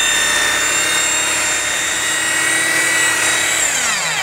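Electric rotary buffer with a wool cutting pad running steadily against a fiberglass hull, cutting in a polishing compound, with a steady motor whine. Near the end the motor winds down and its pitch falls.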